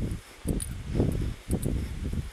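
Footsteps of a person walking on an asphalt path, about two steps a second, each a dull thud with a short scuffing click, with rustling on the handheld phone's microphone.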